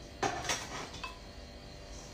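A couple of light knocks and a small clink of dishes on a stone counter, then a low steady hum.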